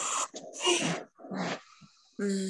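A dog giving three short barks or yelps, picked up faintly over a participant's video-call microphone.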